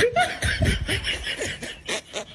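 A person laughing in a quick run of short bursts that trails off near the end.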